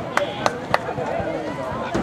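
Sharp, evenly spaced claps, about three or four a second, that stop about three-quarters of a second in, with high-pitched shouting voices underneath.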